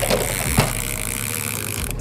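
Boat's outboard motor running at trolling speed under a steady hiss of wind and water, with a single click about half a second in; the hiss cuts off abruptly near the end.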